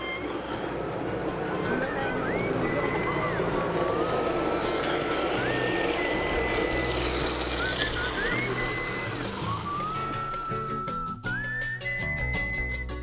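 A whistled tune of held notes with short upward slides between them, over a steady rushing background. About eleven seconds in, a drum beat comes in under the whistling.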